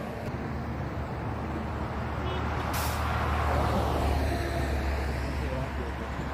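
Motorway traffic going by: tyre and engine noise from passing cars and trucks, swelling about four seconds in as a vehicle passes close. A brief sharp hiss about three seconds in.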